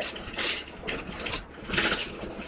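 Bus engine running with road noise, heard from inside the passenger cabin while the bus is moving. There are two brief louder rushes of noise, one about half a second in and one near the end.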